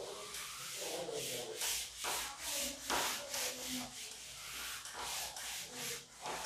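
A cloth duster wiping chalk off a chalkboard, a steady run of back-and-forth rubbing strokes, roughly two to three a second.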